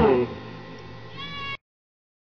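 A surf-rock band's guitars and drums stopping at the end of a song, the sound dying away within a quarter second into a low hush. Near the end comes a short high-pitched cry, rising slightly in pitch, and then the sound cuts off abruptly.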